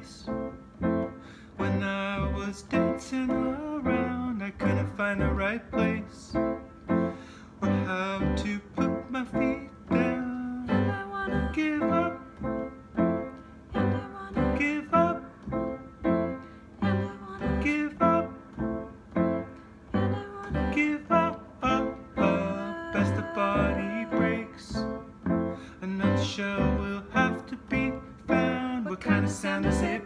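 Piano and guitar playing a song together, with chords and notes struck in a steady rhythm.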